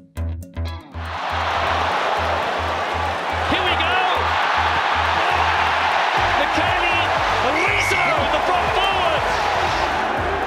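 Rock-style background music with a pounding bass beat. About a second in, the steady noise of a large stadium crowd cheering rises under the music and holds, with scattered shouts on top.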